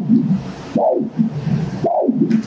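Spectral Doppler audio from a GE LOGIQ E9 ultrasound machine sampling abdominal aortic blood flow: a pulsing whoosh with each heartbeat, about one pulse a second, each rising sharply and fading. It is the sound of normal pulsatile arterial flow, with a peak velocity of about 120 cm/s, which is considered normal.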